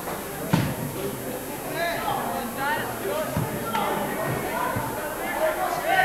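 Indistinct chatter of spectators' voices, with a few dull thuds, the loudest about half a second in.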